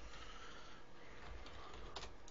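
Faint room hiss with a few soft clicks from computer keyboard keys as a short word is typed, the clearest click near the end.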